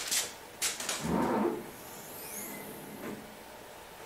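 The lid of a CO2 laser engraver's cabinet is handled and lifted open. A couple of short rustles are followed by the loudest bump-and-rustle about a second in. Faint high squeaky glides come as the lid rises.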